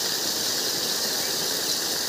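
Well water gushing in two streams from the outlets of a Y-joined pipe and splashing onto dry ground, a steady hiss.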